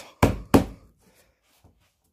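Two hand knocks on a car's front fender and its bolted-on fibreglass widebody flare, about a third of a second apart, struck to show how solid the flare is.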